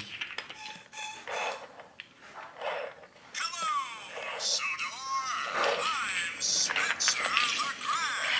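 Faint rustle and light clicks, then from about three seconds in a high-pitched voice sliding up and down in short calls, with no clear words.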